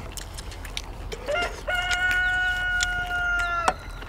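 A rooster crowing once. The crow starts with a short rising note about a second in, then holds one long call for about two seconds, dropping slightly in pitch before it cuts off abruptly near the end.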